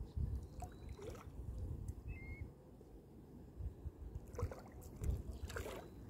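Small waves lapping and splashing irregularly against the rocks at the water's edge, over a gusty low rumble of wind on the microphone. A short high chirp about two seconds in.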